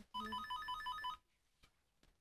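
Apartment-building door intercom panel sounding its electronic call tone: a fast two-pitch warble for about a second, then a pause, as it rings a flat and waits for an answer.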